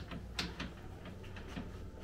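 Loose front A-arm of a 2020 Polaris RZR Pro XP clicking faintly on its mounting bolt as it is wiggled by hand, with a couple of light knocks in the first second. It is slop from worn stock bushings and egged-out mounting holes.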